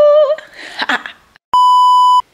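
A steady, loud electronic test-tone beep, like the tone that goes with TV colour bars, starts about a second and a half in as part of an edited glitch transition. Before it, a woman's held vocal note trails off and is followed by a short breathy sound.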